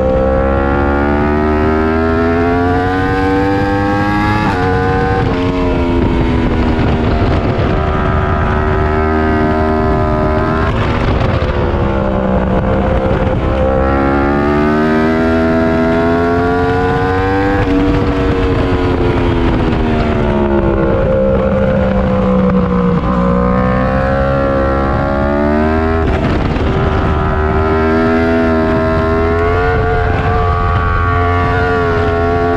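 Yamaha R1 inline-four engine at full track pace. Its pitch climbs for several seconds, then falls, sharply about a quarter of the way in, a third of the way in, past halfway and near the end, and more gradually between, as the rider changes gear and slows for corners.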